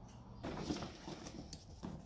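Faint rustling and light ticking of hands handling and pressing a vinyl decal onto a go-kart's plastic front cowling, starting about half a second in.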